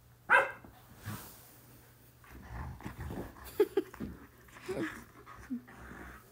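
German shepherds play-fighting over a toy. There is one sharp, loud bark about a third of a second in, then a few seconds of growling and scuffling with short sharp clicks.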